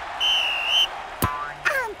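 A referee's whistle gives one short, steady blast to signal kick-off. About a second later comes a single sharp knock as the football is kicked.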